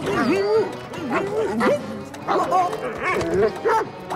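Cartoon dog noises voiced by a performer: a run of excited barks, yips and whines, each sliding up and down in pitch, over background music.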